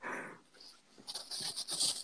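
A person's breathy exhales: one short puff of breath at the start, then airy, panting-like breathing from about one second in.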